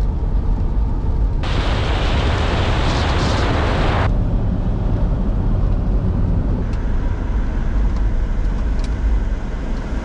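Road noise inside a Toyota Prius driving on a wet road in the rain: a steady low rumble, with a louder rushing hiss that starts and stops abruptly between about one and a half and four seconds in.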